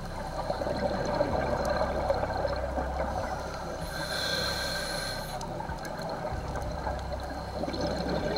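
Underwater ambience picked up by a diver's camera: a steady rush of water noise, with a brief hiss from about four seconds in that lasts a second or so.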